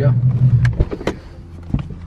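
Ford Mustang driver's door being unlatched and opened from inside: a few sharp clicks and knocks from the handle and latch. The steady low hum of the car cabin drops away about three-quarters of a second in.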